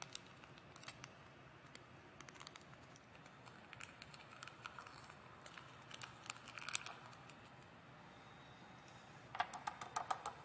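Faint crinkling of a foil packet being squeezed and shaken as dry salts are poured through a plastic funnel into a plastic centrifuge tube, with scattered light clicks. A quick run of sharp plastic clicks comes near the end.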